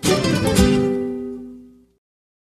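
Closing chords of a recorded sertanejo song on guitar. A strum at the start and another about half a second in ring out and fade away, and the music stops shortly before two seconds.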